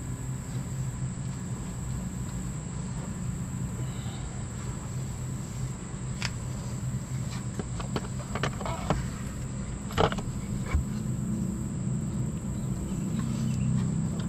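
A transmission front oil pump being fitted over the input shaft into the automatic transmission case: a few sharp metal clicks and knocks in the second half, over a steady low hum.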